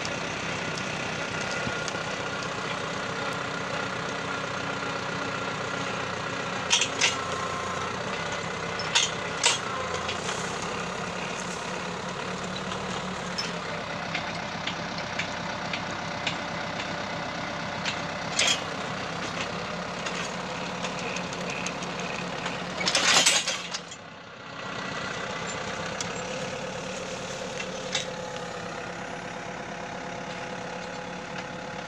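Same Argon tractor's diesel engine running steadily as it drives a rear-mounted earth auger boring a sapling hole in stony soil. A few sharp clicks sound over the engine, and about three quarters of the way through there is a short, loud rush of noise followed by a brief dip in level.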